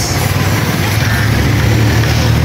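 A motor vehicle's engine running close by, a steady low rumble under a continuous noisy rush.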